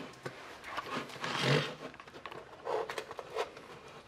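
Masking tape being peeled off painted wood: a few short rasping tears with small clicks and handling knocks, the longest about a second and a half in.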